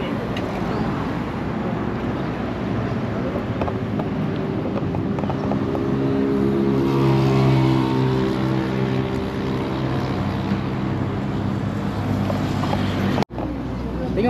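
Road traffic passing on a multi-lane road, with one vehicle's engine growing louder and passing close by about halfway through. The sound cuts out briefly near the end.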